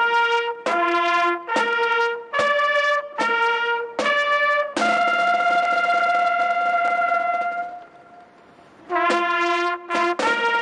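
Solo trumpet playing a slow, mournful melody: six short held notes stepping up and down, then one long high note held about three seconds that fades away, a pause of about a second, and the melody starting again.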